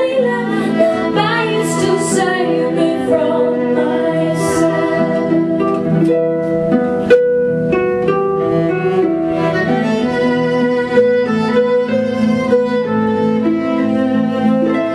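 Live band music: a harp plucking notes over sustained bowed-string lines.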